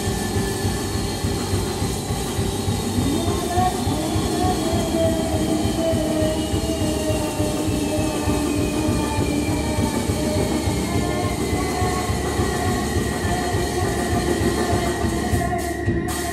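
Live electronic noise drone from synthesizers and effects units: a dense, rumbling wall of noise with wavering middle tones and a thin high whine that slowly falls in pitch.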